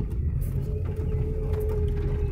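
Car driving on a bumpy dirt road, heard from inside the cabin: a steady low engine and road rumble with a few light rattles, and a steady hum that comes in about half a second in.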